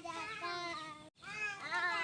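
A young child's high voice in drawn-out, sing-song calls: two long phrases with a short break about a second in.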